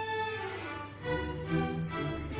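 Symphony orchestra playing, with the bowed strings (violins and cellos) to the fore. About a second in, a new phrase of lower notes enters.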